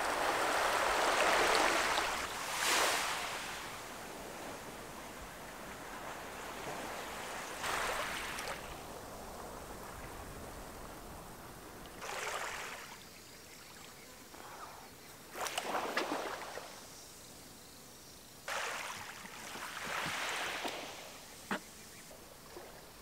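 Small waves washing up on a sandy beach, a soft rush of about a second coming every few seconds, with a sharp click near the end.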